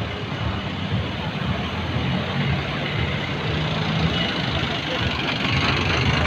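Street traffic noise at night: a small van's engine running as it drives by, over a steady rumble of road noise and background voices.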